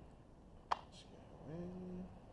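A single sharp click as small gun-cleaning-kit parts are handled and fitted together by hand. Near the end comes a short low hum that rises in pitch and then holds steady.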